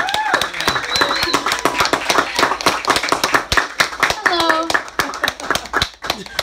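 Small audience applauding after a song, with whoops and shouts from a few listeners over the clapping. The applause dies away near the end.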